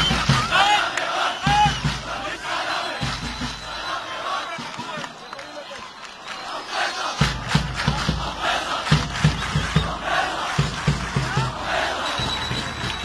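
Large crowd of football supporters in a stadium chanting and shouting, with bursts of low thuds mixed in.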